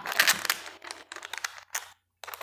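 Wide plastic tape crinkling and crackling in irregular bursts as hands fold and press it over small button batteries, thinning out in the second half.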